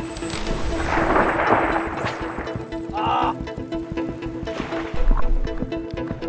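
A steady held music drone under a rushing wash of whitewater, with a deep low boom about five seconds in.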